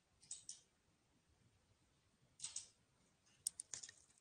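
Near silence, broken by a few faint, scattered clicks: two near the start, a soft brief hiss past the middle, and a quick cluster of clicks near the end.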